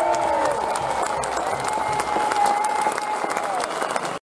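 A large crowd applauding and cheering, dense clapping with a few long held shouts rising above it.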